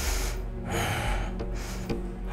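A woman breathing hard, two breaths about half a second apart, from the effort of lifting her pelvis in an abdominal exercise, over quiet background music.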